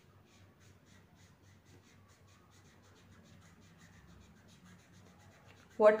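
A felt-tip marker scribbling quickly back and forth on paper as it colours in a number, about five faint scratchy strokes a second. A woman's voice starts just before the end.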